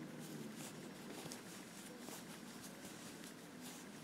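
Faint rustling and light irregular ticks of a Tunisian crochet hook working wool yarn, drawing loops off the hook two at a time on the return pass.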